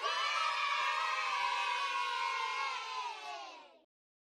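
A group of children cheering together, many voices at once, starting suddenly, held about three and a half seconds, then fading out.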